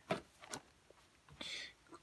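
Plastic DVD and game cases being handled, with a few short clicks early on and a brief soft rustle about one and a half seconds in.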